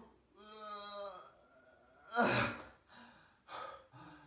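A man straining on his back at a sit-up: a drawn-out, strained voiced effort sound, then a loud, heavy gasp of breath about two seconds in, followed by a few short, quieter breaths.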